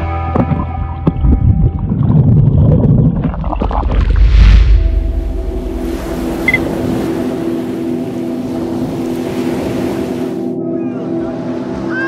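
Background music fading out over the first two seconds. A rushing swell of ocean surf peaks about four and a half seconds in, then gives way to a steady surf hiss with a low steady hum, which cuts off suddenly near the end.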